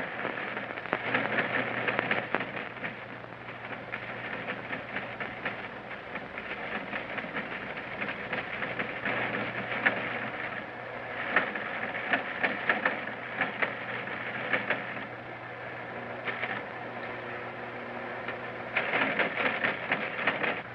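Teletype machine printing: a fast, continuous clatter of typing strokes that swells and eases in bursts, over a faint steady low hum.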